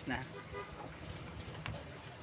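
The last syllable of a spoken word, then low background noise with a faint steady hum. There is a brief faint pitched sound about half a second in and a light click a little past the middle.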